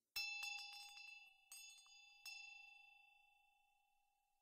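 A small metal bell is rung: a quick cluster of strikes at the start, then two more strikes under a second apart. Each leaves a clear ringing tone that slowly dies away.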